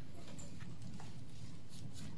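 Steady low room noise with a few faint knocks and clicks.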